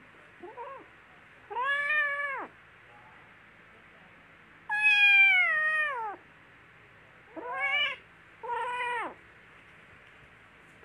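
Kitten meowing: a faint short mew, then four high mews, each falling in pitch at its end. The second mew is the longest and loudest.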